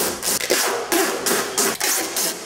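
Hands rubbing and pressing tape or plastic sheeting down over a duct register, making a run of quick, rough scraping strokes, about three a second.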